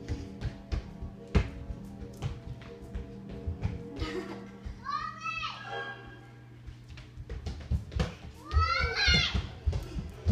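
Young children playing, with two high squeals, one about halfway through and one near the end, over background music and many light footfalls on a wooden floor.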